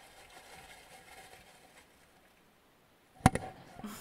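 Faint background hiss, then about three seconds in a single sharp knock as a spectacled bear's muzzle bumps into the camera trap, followed by a few softer knocks and scuffs against the housing.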